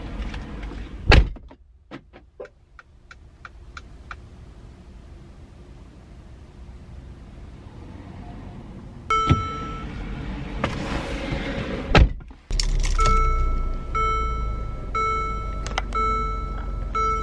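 A car door shuts with a loud thunk about a second in, followed by a quiet stretch with a few light ticks. Later the car's chime starts sounding, the door thunks shut again about twelve seconds in, and a low steady hum sets in under a chime repeating about once a second.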